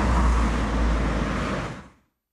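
Steady outdoor background noise: a low rumble with a hiss over it, fading out near the end.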